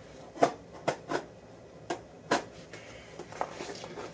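A shipping package being handled and opened: about six sharp clicks and knocks, with a short rustle near the end.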